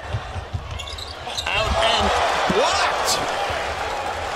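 Basketball bouncing on a hardwood court amid arena crowd noise. The crowd grows louder about a second and a half in.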